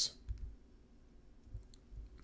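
Quiet room tone with a few faint, short clicks, one just after the start, one about a second and a half in and one at the end.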